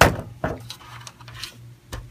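A sharp clack of the screwdriver on the steel server chassis and backplate screw, followed about half a second later by a lighter knock.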